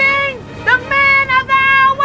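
Music: a high-pitched voice singing a melody of short held notes, one at the start and then a run of several after a brief gap.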